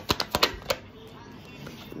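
Tarot deck being shuffled by hand: a quick run of card flicks and clicks that stops under a second in.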